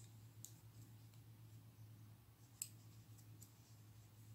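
Faint, scattered clicks of metal knitting needles tapping against each other as stitches are worked, over a low steady hum; one click a little past halfway is the loudest.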